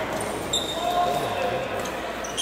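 Sports shoes squeaking on an indoor court floor during badminton doubles play. One high squeak starts about half a second in and holds for under a second, over the steady murmur of many voices in a large hall.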